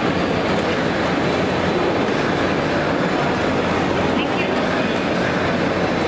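Loud, steady background din of a crowded place: indistinct voices over a constant rumble, with no single event standing out.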